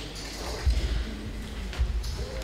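Two low thumps about a second apart over the hall's steady room noise.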